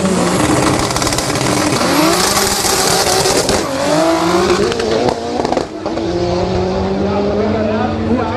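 Two cars launching side by side in a drag race: engines revving at the line, then accelerating hard, their pitch climbing and dropping back at each gear change as they pull away.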